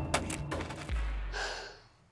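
The tail of a music cue dying away, with a low rumble and a short breathy rush of noise about a second and a half in, then fading to near silence.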